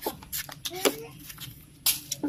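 Knife blade shaving the peel off a mango: a series of short, sharp scraping cuts, the loudest near the end.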